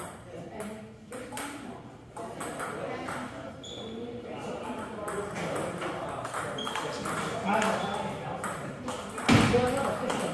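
Table tennis rally: the celluloid-type ball clicking sharply off paddles and the table in quick irregular strokes, over background chatter in the hall, with a louder knock or burst about nine seconds in.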